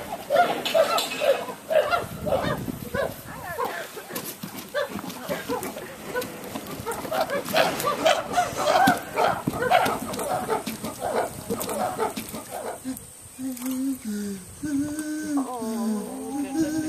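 Chimpanzees calling excitedly: a long run of quick, repeated hoots and calls. A lower, drawn-out voice takes over in the last few seconds.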